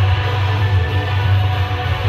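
Loud recorded music playing, with a heavy, steady bass and guitar.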